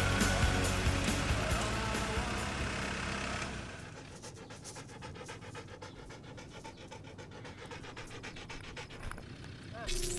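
Background music with a beat fading out over the first few seconds, then a Czechoslovakian wolfdog panting rapidly and evenly, close to the microphone of a camera worn on its head.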